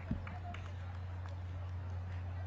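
Steady low hum with faint background voices, and a single soft thump just after the start.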